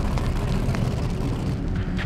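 Powerboat engines idling on the water: a low, uneven rumble.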